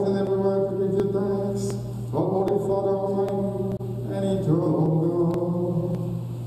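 Slow liturgical chant: a voice sings long held notes, stepping to a new pitch about every two seconds, over a steady low hum.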